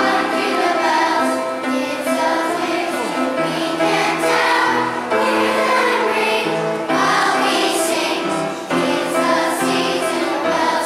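A children's choir singing together, sustained sung phrases with brief breaks between them.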